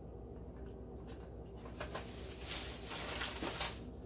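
A paper grocery bag rustling as a hand rummages in it and lifts an item out, after a couple of light knocks. The rustling swells in the second half and stops just before the end.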